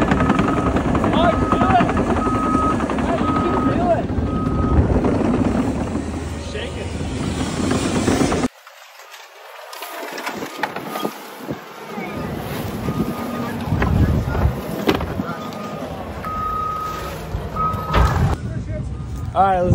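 Heavy earthmoving equipment's backup alarm beeping in a steady repeating pattern over the machine's engine running. About halfway through, the sound cuts abruptly to a quieter level, with the beeping fainter and then plainer again near the end.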